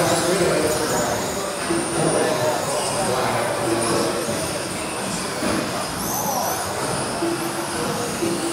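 Electric RC buggies with 17.5-turn brushless motors racing on an indoor carpet track: high motor whines rising and falling as they accelerate and brake, over the reverberant hum of the hall.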